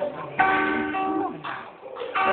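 Guitar chord strummed once about half a second in. It rings with several notes together for nearly a second, then fades.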